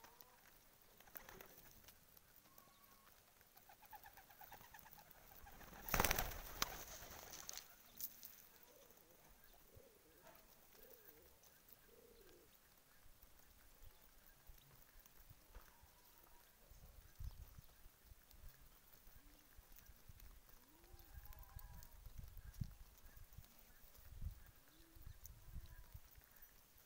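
Domestic pigeons cooing softly while they feed on scattered grain, with a brief louder rustle about six seconds in.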